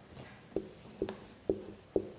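Marker writing on a whiteboard, with four sharp taps about half a second apart as the letters are written.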